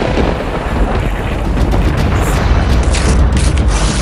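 Film sound effect: a loud, continuous low rumble like thunder, with hissing surges near the end.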